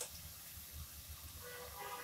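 A metal slotted spoon clinks once against a steel kadai, then the faint sizzle of mathri deep-frying in oil on low flame.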